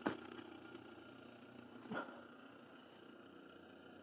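Faint steady hum of a Rotoverter AC motor running off a BiTT transformer's secondaries on 120 V 60 Hz grid power. A short knock just after the start and a lighter tap about two seconds in.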